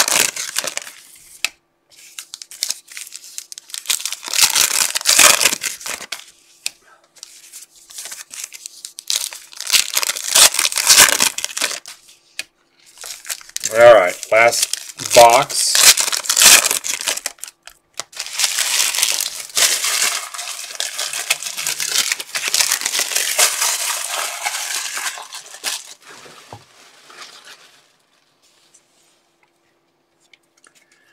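Foil trading-card pack wrappers being torn open and crumpled by hand, in several bouts of crinkling that stop a few seconds before the end.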